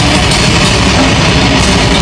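A live heavy rock band playing loudly: a drum kit with repeated cymbal hits over amplified guitars.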